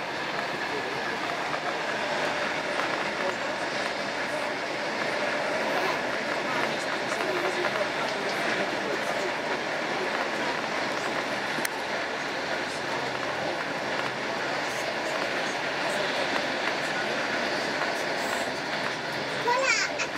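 Passenger train running at speed, heard from inside the carriage: a steady rushing rumble of wheels on the track, with faint passenger voices in the background. Brief high squeaky sounds come right at the end.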